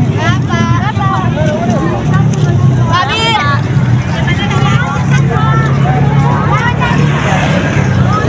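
Several voices chattering over one another in a marching group, over a steady low engine hum from traffic.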